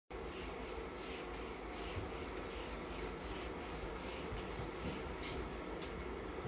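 Paintbrush scrubbing back and forth on paper close to the microphone: quick, even rubbing strokes, about four a second.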